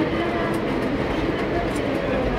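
Railway station platform ambience: a steady hubbub of background voices and general noise, with no single sound standing out.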